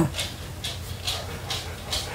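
Faint sounds from a dog, which is outside waiting to be let in.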